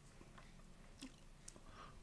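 Near silence: room tone with two faint clicks, about a second and a second and a half in.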